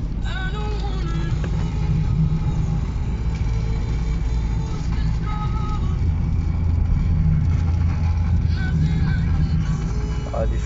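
Road and engine noise of a car driving, heard from inside the cabin: a steady low rumble.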